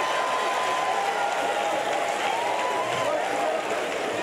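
Church congregation applauding steadily, with voices calling out over the clapping in response to the preacher.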